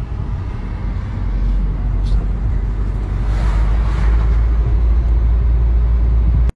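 Steady low rumble of engine and road noise inside a moving car's cabin, growing louder about a second in.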